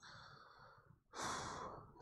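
A man breathing close to a clip-on microphone: a faint breath, then a louder breath about a second in, just before he speaks again.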